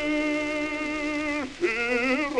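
Operatic male bass voice singing in an early twentieth-century recording. It holds a long note that breaks off about one and a half seconds in, then starts a new note with vibrato.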